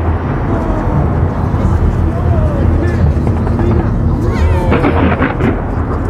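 A fireworks display going off in a dense, continuous low rumble and crackle of many bursts. People's voices call out about four and a half seconds in.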